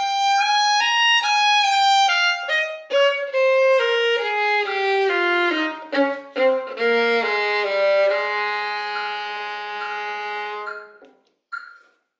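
Solo violin playing a practice exercise at a set tempo: a line of bowed notes that steps downward, then a long held final note that stops about a second before the end. Short, evenly spaced metronome beeps keep time and are heard on their own once the violin stops.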